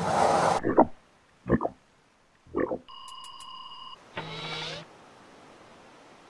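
Cartoon sound effects: a rushing whoosh that cuts off about half a second in, then three short vocal grunts from a cartoon character. An electronic beep lasts about a second around the middle, followed by one more short vocal sound.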